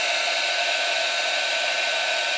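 Craft embossing heat gun blowing steadily with a thin constant whine, melting white embossing powder on vellum from behind the sheet.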